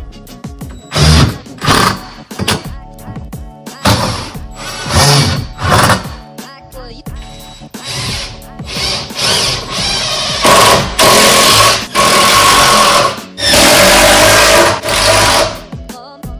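Cordless drill running in bursts under load: a few short pulls, then two longer runs of about two to three seconds each near the end, with a steady motor whine. Background music plays underneath.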